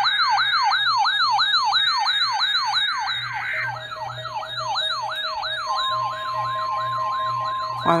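Several weather alert radios sounding their alarms together for the weekly test: a siren-like warble rising and falling about three to four times a second, with a faster, higher warble above it and steady tones that switch on and off. A further steady tone joins about six seconds in.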